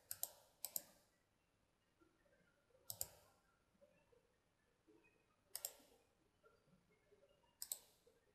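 Faint computer mouse clicks, mostly in quick pairs: two pairs within the first second, a click about three seconds in, another pair a little past halfway, and a pair near the end.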